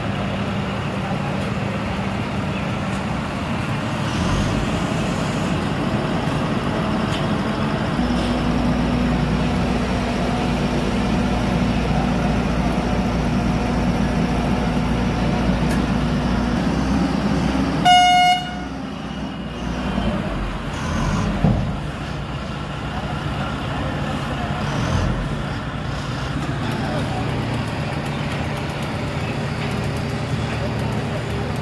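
Engines of an asphalt paver and the tipper truck feeding it, running steadily, with a deeper low rumble joining about a third of the way in. About halfway through a vehicle horn gives one short, loud toot.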